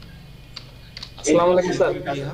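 A few sharp keystrokes on a computer keyboard as a search phrase is finished and entered. A little over a second in, a person's voice comes in, louder than the typing.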